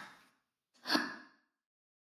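A single short, breathy vocal exhale like a sigh, about a second in, fading quickly. It is surrounded by silence in a gap of the song.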